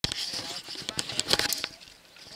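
A rapid, irregular run of sharp clicks and rattles that dies away just before the end, with faint voices behind it.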